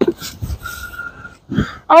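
Gusty wind buffeting a clip-on microphone with a rough, uneven rumble. There is a sharp knock at the very start and a short steady high note in the middle. A man's loud exclamation begins right at the end.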